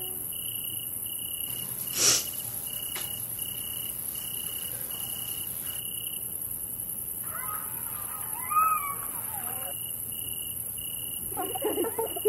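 Night ambience of crickets chirping in a steady pulsed rhythm about twice a second over a constant high insect whine. A brief loud whoosh comes about two seconds in, a short wavering voice-like sound around eight seconds, and voices with laughter start near the end.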